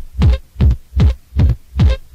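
Techno kick drum playing on its own with the rest of the track stripped out: five deep beats, about two and a half a second, each dropping in pitch as it decays.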